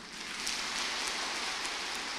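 Audience applauding: a dense, even patter of clapping that swells in over about half a second and holds steady.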